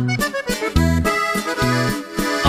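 Instrumental break in a corrido: accordion melody over a bass line with low notes repeating on the beat, no singing.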